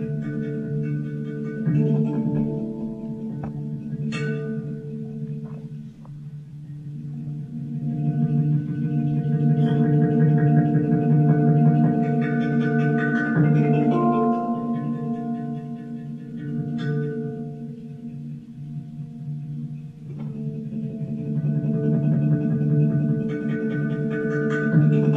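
PANArt Hang, a steel handpan, played with the hands: ringing notes overlapping and sustaining into one another, with a few sharper strikes. It swells louder in the middle and again near the end.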